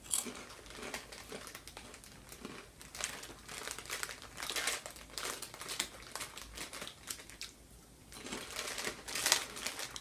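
Thin clear plastic snack bag crinkling as it is handled, in irregular bursts, loudest near the end as a hand reaches into the bag.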